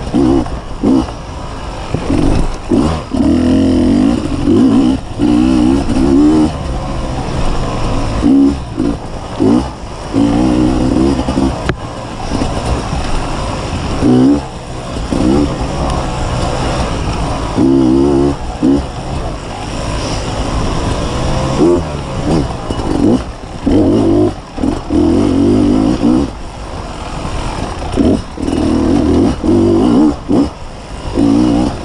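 2015 Beta 250RR two-stroke enduro bike engine under hard riding, the throttle opening and closing so the revs climb and drop every second or two.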